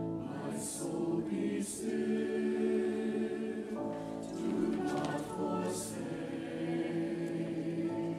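Church choir singing a slow hymn in parts, with violin accompaniment: long held chords that change every second or so.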